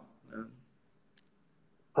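A pause, mostly near silence, with a brief faint vocal sound shortly after the start and a tiny, sharp double click about a second in.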